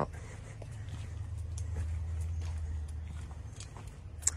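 Footsteps on a concrete driveway, faint scattered clicks over a steady low rumble on a phone microphone.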